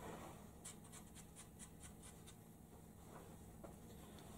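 Snooker cue tip being chalked: about ten quick, faint scratching strokes over a little under two seconds.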